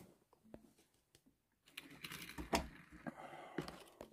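Faint, scattered light clicks and taps, as of small hard objects being handled, starting about one and a half seconds in and loudest a second later.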